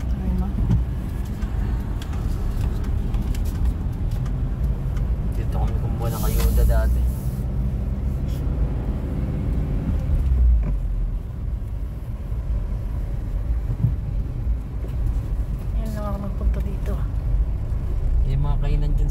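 Car cabin noise while driving: a steady low rumble of engine and road heard from inside the moving car.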